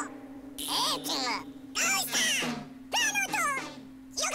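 Movie soundtrack: costumed monster characters in a 1971 Japanese tokusatsu film shouting their names in turn, about three short, loud shouts roughly a second apart, over a single held music note.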